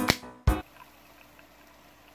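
Background music stops abruptly with a loud final hit about half a second in. After it comes a faint, steady liquid sound: carbonated soda pouring from a can into a pot of boiling water.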